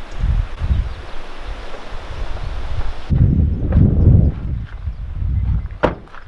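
Wind buffeting the camera microphone: an uneven low rumble with a hiss over it in the first half and stronger gusts in the second half, and a single sharp click just before the end.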